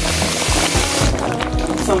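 Hot water poured into a steel pot of ground egusi and boiled meat, a rushing splash for about the first second, over background music with a steady bass line.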